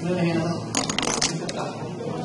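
A quick run of sharp clicks and taps about a second in, lasting about half a second, with one more just after: a marker tapping and scratching on a whiteboard.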